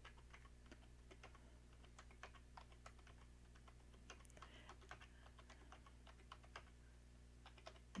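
Faint keystrokes on a computer keyboard: quick, irregular clicks as numbers are typed in one after another, over a low steady hum.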